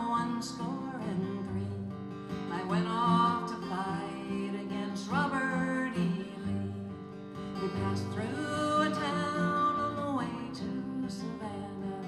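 Live acoustic music: a woman singing a sad song over strummed acoustic guitar, with a lap steel guitar sliding alongside.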